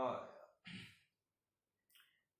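A man's drawn-out hesitant "aah" trailing off, then a short breathy sigh about two-thirds of a second in.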